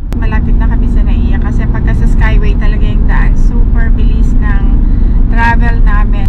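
Steady low road and engine rumble inside a moving car's cabin, with a person talking over it. A brief click right at the start.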